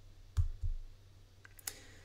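A few short computer mouse clicks: two close together about half a second in and another near the end.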